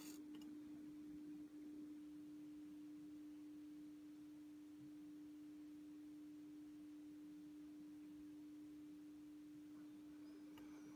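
Near silence with a faint, steady hum at a single pitch.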